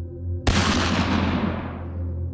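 A single gunshot about half a second in, sudden and loud, with a long echoing tail that dies away over about a second and a half. A low, steady music drone runs underneath.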